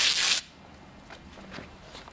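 A Velcro fastener on a fabric puppet ripping open as it is pulled apart, one short rip in the first half-second. A few faint rustles and taps follow.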